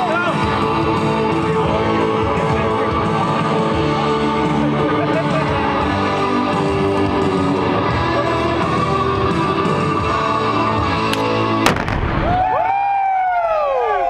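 Music playing, cut across about twelve seconds in by one sharp blast from a controlled detonation of unexploded ordnance. The music stops and voices shout after the blast.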